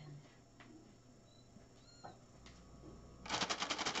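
Wet wipe being pulled out of a soft plastic wipes pack: a loud, rapid crackling rattle of about a dozen clicks a second, lasting just over a second near the end.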